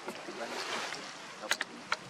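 Outdoor ambience: a steady hiss, broken by two sharp clicks, one about one and a half seconds in and one just before the end.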